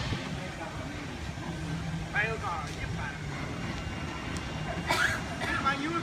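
People talking in short bursts, over a steady low hum.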